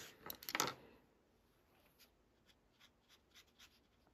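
Small art tools handled on a desktop: a brief clatter of light knocks in the first second, then a few faint, light ticks spaced irregularly.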